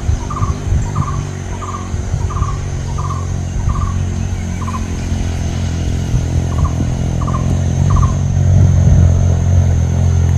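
A motorcycle engine approaching along a dirt road, a low hum growing louder toward the end. Over it a bird repeats one short call about three times every two seconds, stopping about eight seconds in.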